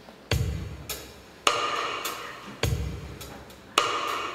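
Slow drum beat opening a recorded backing track: four hits a little over a second apart, a deep bass-drum stroke alternating with a brighter snare-like one.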